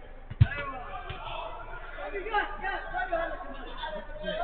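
A single sharp thump of a football being struck, about half a second in, followed by players calling out and chattering.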